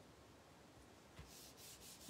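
Hands pressing and smoothing a glued paper panel down onto a card front: after a near-silent first second, a few faint rubs of skin on cardstock.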